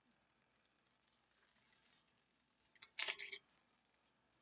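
A stack of baseball trading cards handled in the hands: a faint rustle, then a quick flurry of card flicks and crackles about three seconds in.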